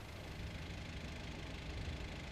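Quiet, steady low rumble of a vehicle engine idling.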